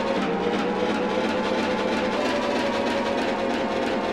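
Audio run through a Euclidean circular spinning delay effect (the Disco Max for Live device): a dense, fast-fluttering wash of chopped repeats with a few held tones and almost no bass, while its slice size is turned down.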